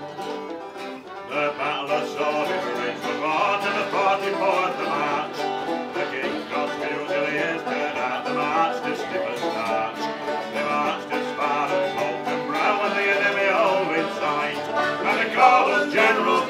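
Folk band playing an instrumental passage on banjo, piano accordion and a pear-shaped plucked string instrument, with the full band coming in about a second in.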